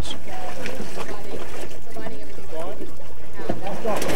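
Water sloshing and churning as a captured manatee thrashes beside people wading at a boat's side, with indistinct voices of the people in the water.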